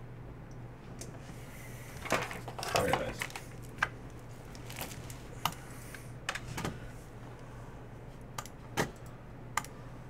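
Computer keyboard and mouse clicks, scattered single taps about a second apart, with a short cluster of louder knocks about two to three seconds in.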